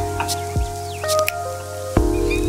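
Instrumental hip-hop beat played on a Roland SP-404 sampler: sustained sampled chords over a bass line, with a deep kick drum about half a second in and short, crisp hi-hat and snare hits.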